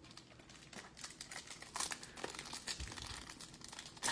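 Foil wrapper of a 2022 Bowman baseball card pack crinkling as it is handled and torn open by hand, a quick run of crackles.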